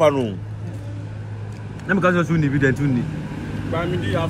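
Short bursts of talk at the table over a steady low background hum, with no other distinct sound.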